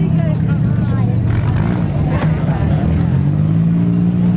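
Demolition derby car engines running at idle, a steady low drone that lifts slightly in pitch near the end, with faint voices over it.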